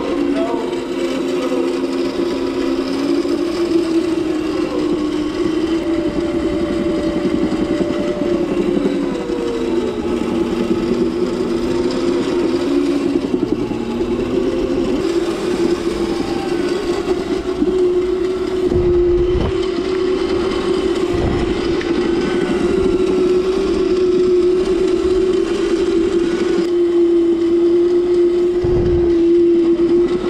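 Electric drift cart's motor whining steadily as it drives over a tiled floor, its pitch rising and falling with speed, with a few low thuds in the second half.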